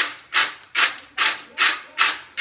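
Almonds rattling in a stainless-steel colander as it is shaken back and forth in a steady rhythm, about two and a half shakes a second.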